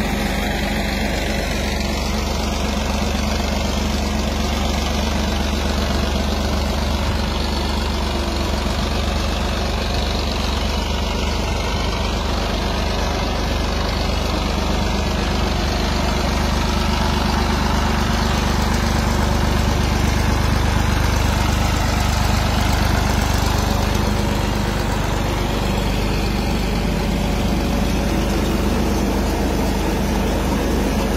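Tractor's diesel engine running steadily under load as it pulls a groundnut digger through the field, swelling a little louder about two-thirds of the way through.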